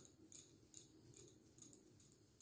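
Wool yarn being wound around the fingers, a faint rhythmic swish or rasp about two and a half times a second as each wrap is pulled across the hand, over a low steady hum.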